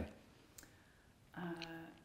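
A quiet pause with one faint click about half a second in, then a woman's drawn-out hesitant "uh" as she begins to answer, near the end.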